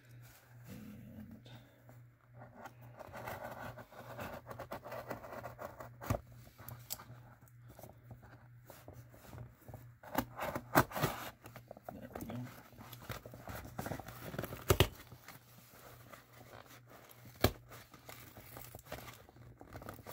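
Cardboard shipping box being handled: scattered rustling and scraping with several sharp knocks, over a steady low hum.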